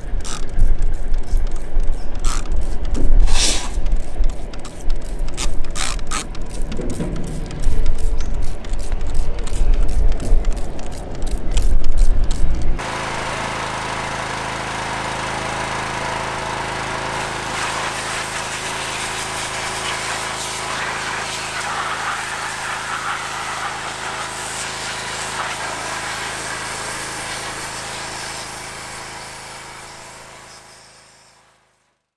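A hand trigger sprayer clicking rapidly as cleaner is pumped onto an aluminium SR20 engine block, over heavy low rumble. About thirteen seconds in the sound cuts abruptly to a pressure washer running steadily, its motor humming under the hiss of the water jet on the engine, fading out at the end.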